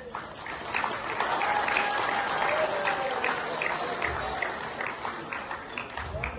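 A group applauding, swelling in the first second and thinning out near the end, with some voices mixed in.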